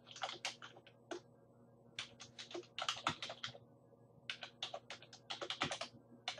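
Typing on a computer keyboard: three quick runs of key clicks separated by short pauses.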